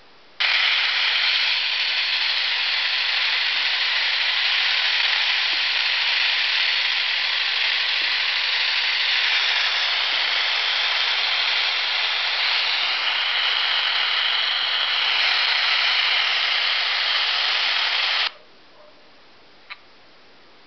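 A phone's built-in analogue TV tuner playing loud, even static hiss through its small loudspeaker. The hiss comes in abruptly and cuts off abruptly near the end as the TV app closes, followed by a light click.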